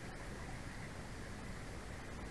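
Steady outdoor background noise: an even hiss with a low rumble underneath and no distinct calls or knocks.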